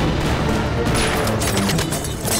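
Film soundtrack of a gunfight: rapid bursts of gunfire over loud background music.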